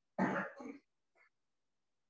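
A man clearing his throat: one short, rough burst of about half a second, followed by a faint trailing sound about a second in.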